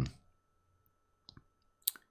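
A pause in conversation: the end of a spoken word, then quiet room tone broken by a faint click about a second in and a sharper click just before the next speech.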